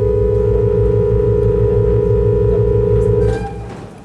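Pipe organ holding a loud sustained chord: two close high notes beating against each other over deep, pulsing bass notes. The chord cuts off a little over three seconds in, and the hall's reverberation dies away.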